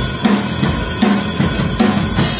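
Metal band playing live, the drum kit to the fore: heavy bass drum and snare hits land about two and a half times a second, each with a low bass note under it.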